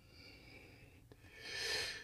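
Near quiet, then about a second and a half in, a man's short breath in through the nose just before he speaks.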